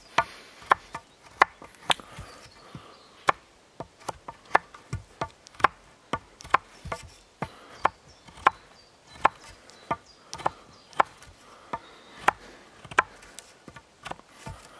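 Knife blade biting into and paring a green wooden branch as it is carved round, a string of short, sharp cuts at an irregular pace of about one to two a second.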